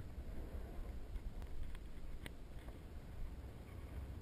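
Faint low wind rumble on the microphone, with a couple of light clicks from handling.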